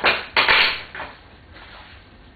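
Three short clattering scrapes of hand work on a bare car door frame, the middle one the loudest.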